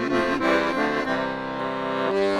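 Piano accordion playing a short instrumental passage of held chords, changing twice, with no voice over it.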